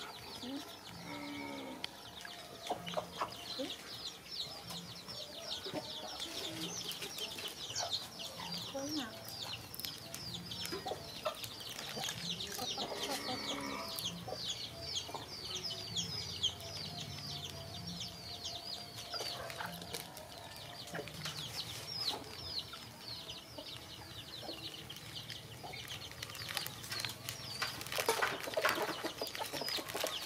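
Birds chirping: a dense run of short, high, falling peeps, several a second, thinning out near the end.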